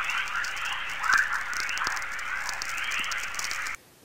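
A dense bed of small chirps and crackle with scattered sharp clicks, like a natural chorus. It cuts off abruptly just before the end.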